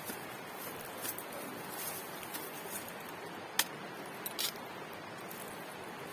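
Machete chopping a green bamboo stalk: a few sharp cracks, the loudest about three and a half seconds in and two more just after, over a steady outdoor hiss.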